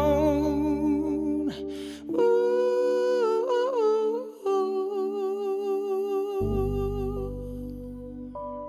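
A male voice hums a wordless, bending melody over sustained electric keyboard chords, ending a slow soulful song. A new low chord comes in about six seconds in, and the music fades gently toward the end.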